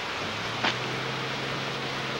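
Steady hiss of rain and wind outdoors, with a low steady hum coming in just after the start and a single sharp click about two-thirds of a second in.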